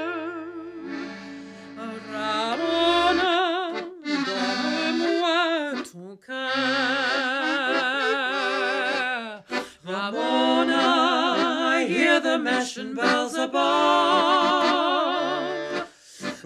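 Mezzo-soprano singing with a wide vibrato over an accordion accompaniment, the accordion holding steady low chords beneath the melody. The phrases break off briefly a few times.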